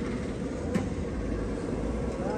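Steady low outdoor rumble with no clear single source, with one short click about three quarters of a second in.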